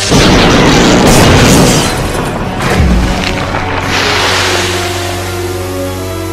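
Cartoon electrical blast sound effect: a sudden loud boom with crackling discharge that dies away over about four seconds, with a low thud about three seconds in. Dramatic background music comes up as the blast fades.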